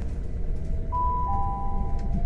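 Train public-address chime before an announcement: a higher tone about a second in, then a lower one, ringing together over the low steady rumble of a moving train carriage.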